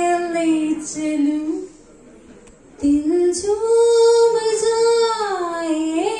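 A woman singing an old Hindi song solo, unaccompanied, into a microphone. She holds long notes, breaks off for about a second around two seconds in, then sings one long phrase that swells up and comes back down.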